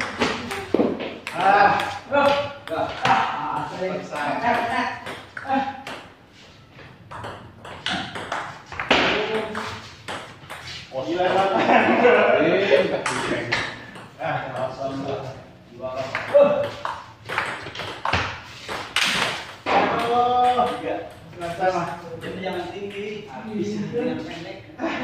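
A table tennis ball clicking back and forth off paddles and the table in quick rallies, with voices talking between points.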